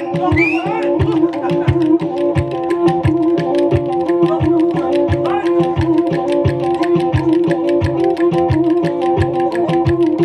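Black Sea kemençe (kemane) playing a fast folk dance tune, a steady drone note held under the melody, over an even beat of clicks with low thumps about twice a second.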